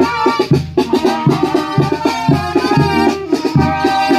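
Brass band music with deep sousaphone bass notes about twice a second under a brass melody, with drum beats.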